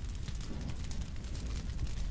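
Fireball sound effect: a deep, steady rumble laced with dense crackling, like a burst of flame burning.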